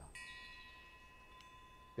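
Faint metallic chime ringing: struck just after the start, it rings on in several steady high tones, with a light second strike about one and a half seconds in.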